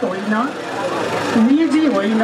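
A woman speaking into a handheld microphone, with a short pause in the middle where only background noise is heard.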